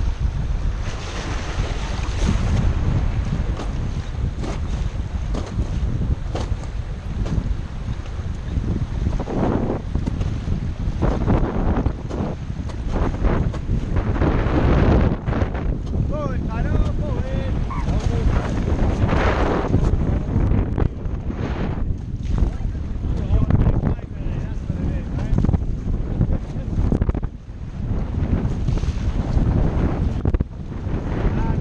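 Wind buffeting a raft-mounted camera's microphone in uneven gusts, over the steady rush of fast river water around an inflatable raft.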